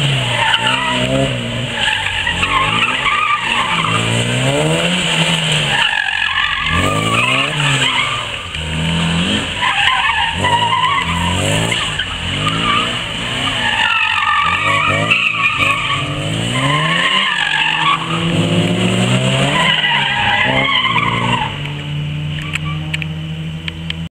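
Classic Mini's four-cylinder A-series engine revving up and falling back over and over as the car is driven hard through an autotest course, with tyres squealing on the concrete during the turns and spins.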